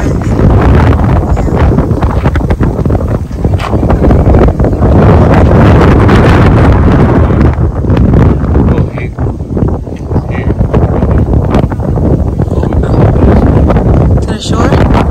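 Strong wind blowing across a phone's microphone: a loud, rough rumble that eases briefly about two-thirds of the way through.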